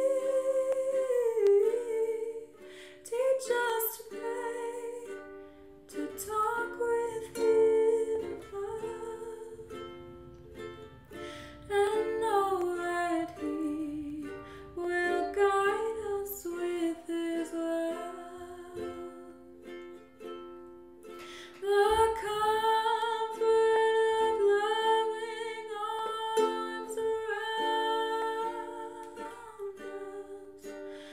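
A woman singing a slow melody while strumming a ukulele as her own accompaniment.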